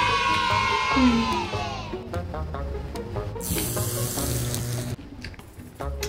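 Background music with a steady low beat. A long held tone that falls slightly fades out about two seconds in, and a burst of hiss comes between about three and a half and five seconds.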